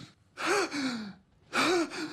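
A person's voice making two breathy gasping sighs, each rising and then falling in pitch, about a second apart.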